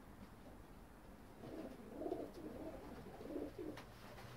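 Pakistani teddy pigeons cooing: a run of several low cooing phrases beginning about a second and a half in, with a single short click near the end.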